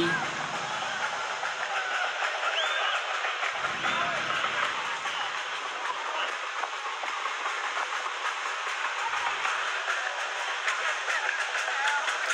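A steady hiss-like background noise with faint distant voices.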